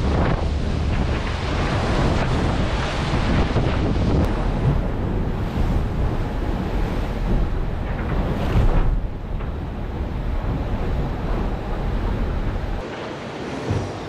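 Wind buffeting the microphone and sea water rushing and spraying past the hull of an IMOCA 60 racing yacht sailing fast through rough seas. The deep rumble drops away suddenly near the end.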